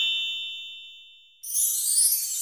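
Intro sound effect: a few high chime tones ring on and fade away. About one and a half seconds in, a sudden bright, hissing sparkle sound starts.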